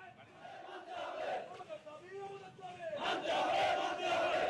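A crowd of protesters chanting slogans together, swelling louder about three seconds in.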